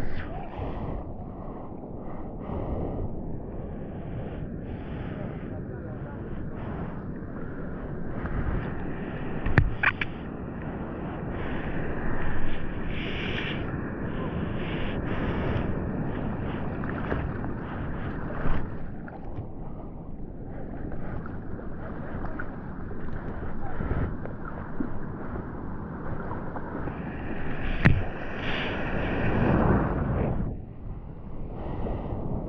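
Sea water sloshing and splashing around a GoPro held at water level on a bodyboard in open surf, with sharp splashes about ten seconds in and again near the end.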